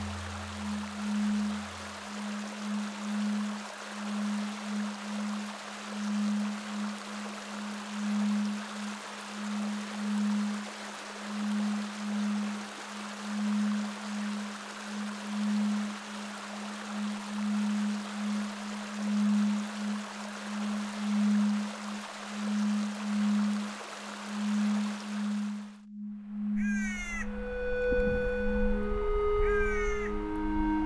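Ambient music: a low tone pulsing about once a second over a steady hiss. About 26 seconds in it cuts off, and repeated harsh calls of a Clark's nutcracker begin, with a few held musical notes and a low rumble.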